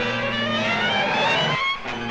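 Engine of a speeding car in a cartoon soundtrack, its note rising steadily in pitch as the car accelerates, mixed with orchestral score.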